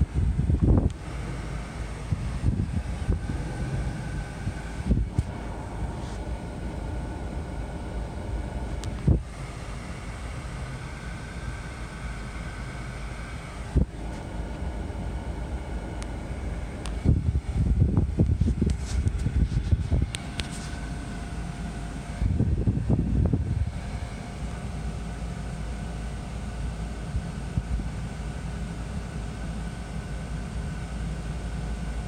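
Steady low hum of a car, heard from inside the cabin, with scattered knocks and rubbing from about 17 to 24 seconds in.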